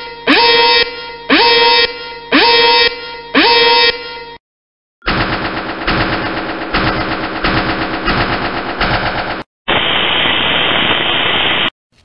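Intro sound effects. First a warning alarm sounds in repeated blasts, about one every 0.7 seconds, each rising in pitch as it starts, until about four seconds in. After a brief silent gap comes a fast, even rattle lasting about four seconds, then two seconds of static hiss that cuts off suddenly.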